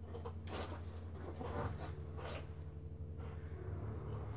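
Quilting fabric pieces being handled and shifted on a cutting mat: faint rustling and brushing with a few soft ticks, over a steady low hum.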